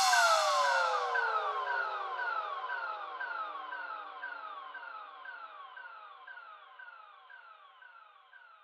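The tail of an electronic dance track: one falling synth sweep echoed over and over, about twice a second, each repeat fainter until it fades out.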